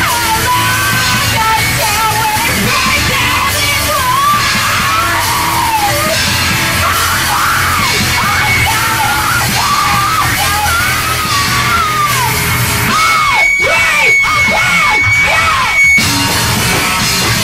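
Rock band playing live, loud, with a yelled vocal over the band throughout. A steady high tone holds over the last few seconds.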